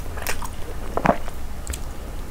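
Close-miked wet mouth sounds of eating fufu with peanut soup: a string of short chewing clicks and smacks, the loudest about a second in.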